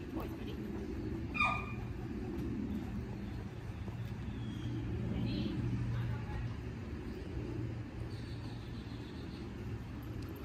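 Steady low outdoor rumble with a constant low hum underneath, and a brief sharp higher-pitched squeak about a second and a half in.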